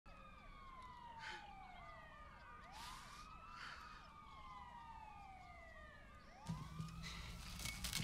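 Faint, overlapping police sirens: several long wails sweeping downward, layered with quick rising-and-falling yelps. About six and a half seconds in they cut off, giving way to a low room hum.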